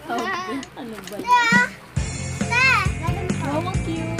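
Young girls' high-pitched excited voices and exclamations over background music.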